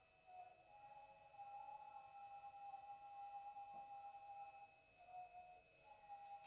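Very faint background music of long held notes, stepping to a new pitch a few times, over a steady thin high whine.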